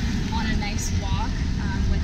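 Steady low outdoor rumble with faint, indistinct voices of people talking nearby.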